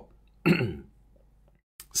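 A man briefly clears his throat once, about half a second in, then near silence.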